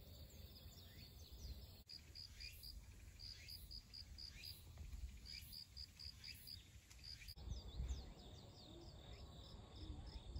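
Faint outdoor ambience of insects chirping in quick groups of short, high pulses, with thin high falling chirps and a low wind rumble on the microphone.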